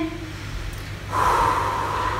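A woman breathing out hard and long through pursed lips, starting about a second in and lasting about a second, while she holds a standing stretch.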